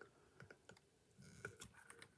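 Near silence with a few faint, light clicks and soft rubbing as a freshly cast hollow resin head is handled and worked out of a silicone mould.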